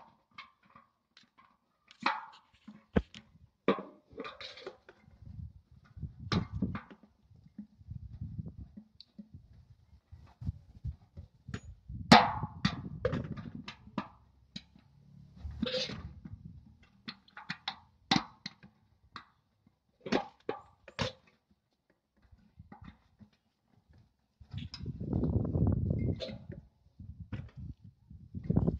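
Metal satellite dish mounting bracket and bolts being handled against the dish's back: scattered sharp clanks and taps with low rustling handling noise, and a longer rumbling stretch near the end.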